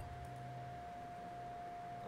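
Faint steady electronic tone held at one pitch, over a low steady hum, with nothing else happening.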